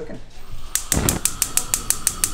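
A gas stove burner's spark igniter clicking rapidly, about seven clicks a second. The burner catches with a soft whoosh about a second in, lighting the flame under the pan.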